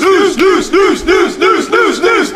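A recorded sound drop played from the studio board as a news-segment cue: a shouted voice-like cry that rises and falls in pitch about four times a second, repeating evenly and loudly.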